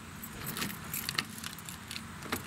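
A bunch of keys on a ring jangling, with a scatter of light metal clinks, while the mechanical key blade is turned in a car door's lock cylinder to unlock it.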